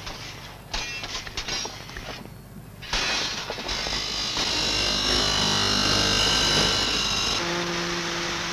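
Light clicking and rattling of steel rebar for the first few seconds, then from about three seconds in a handheld angle grinder cutting through steel reinforcing bar, a loud steady grinding rasp with a high whine. Near the end the grinding gives way to a steady low hum.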